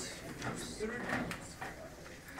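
Indistinct background talk of several students, with a few light knocks and clicks.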